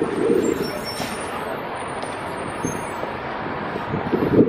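City road traffic passing through an intersection: a steady noise of engines and tyres, louder for the first half second.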